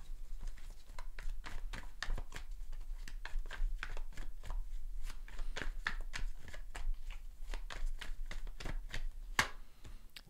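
Tarot deck being shuffled by hand: a continuous run of quick card clicks and flicks, several a second.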